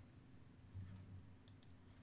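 Near silence, with two or three faint computer mouse clicks about one and a half seconds in.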